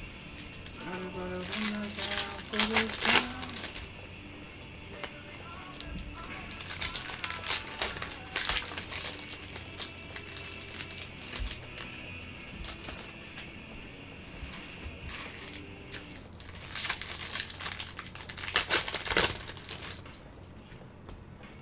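Foil trading-card pack wrappers crinkling and tearing as packs are ripped open by hand, in three bursts.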